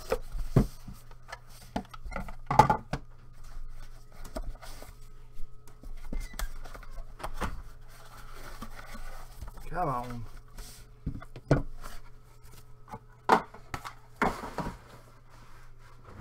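Trading-card box and clear plastic card cases being handled: scattered clicks, taps and knocks of cardboard and plastic, the sharpest about two and a half seconds in and again near thirteen seconds, over a steady low hum.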